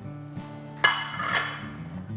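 A small china plate set down on a stone countertop with one sharp, ringing clink about a second in, over background music.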